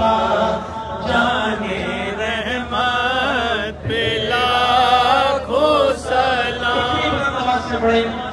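A man's voice chanting a devotional recitation into a microphone, in long, winding held notes, with a brief pause for breath about four seconds in.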